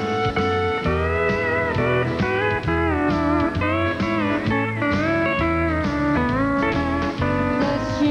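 Live country band's instrumental break led by a pedal steel guitar, its notes sliding up and down over a steady bass and drum rhythm.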